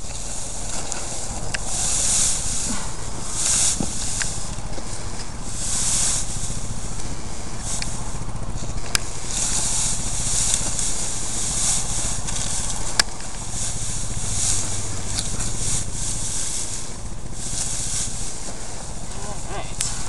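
Rustling and crackling of a nylon hay net dragged over the dry straw of a round hay bale, in repeated bursts as it is tugged into place, with a few sharp clicks and a low steady hum underneath.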